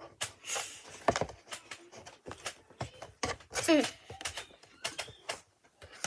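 A child's short wordless vocal sounds in a small room, among scattered clicks and knocks of things being handled.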